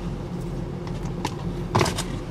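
Steady low hum of a car heard from inside the cabin, with a few faint clicks and a short noisy burst near the end.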